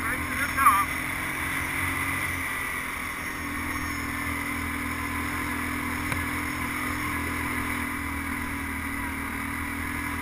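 ATV engine running steadily under load as the quad climbs a rough gravel track, with a short burst of gliding higher tones just under a second in.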